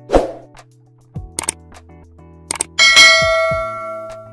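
Logo-animation sound effects over held music tones: a sharp hit just after the start, a few short clicks, then a bright bell-like ding about three seconds in that rings on and fades.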